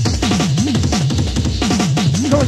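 Hardcore/jungle rave music from a DJ set: fast drum breaks with kick and snare, over a low synth bass line that slides down and up in pitch several times a second.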